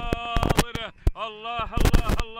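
A man's voice in long, drawn-out calls that rise and fall in pitch, broken by many loud crackling bursts and low rumble on the microphone, with a short dip about a second in.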